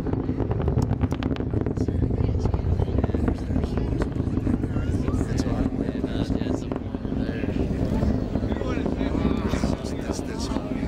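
Space Shuttle Endeavour's launch heard from miles away: a steady deep rumble from its solid rocket boosters and main engines, laced with sharp crackling, most dense in the first few seconds.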